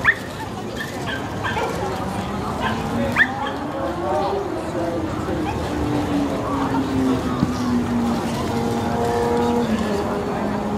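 A dog yips sharply, once at the start and again about three seconds later, over the chatter of a crowd.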